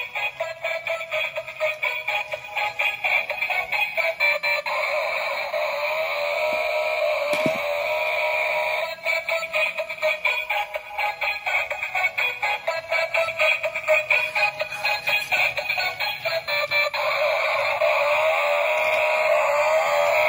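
Battery-operated toy truck playing its built-in electronic tune with synthesized singing through its small speaker, a thin melody with nothing in the bass.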